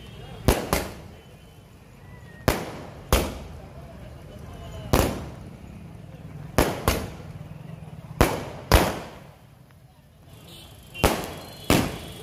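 Aerial fireworks fired from boxes on a street: about eleven loud bangs at uneven intervals, several coming in quick pairs, each with a short echoing tail. There is a short lull just before the last two bangs.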